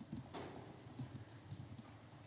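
A few faint, irregular clicks and taps over quiet room tone.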